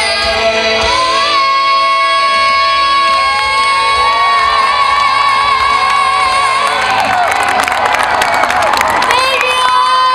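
A female pop singer holds a long sustained note over the band, ending the song; about seven seconds in, the crowd breaks into high-pitched screaming and cheering with clapping.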